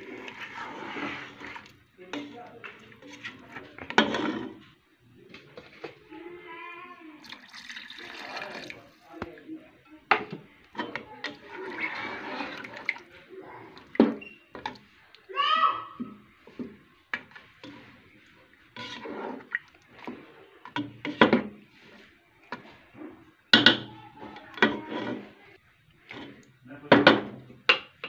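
Water poured into a pan of fried chicken masala, with a spatula stirring it and knocking against the pan again and again.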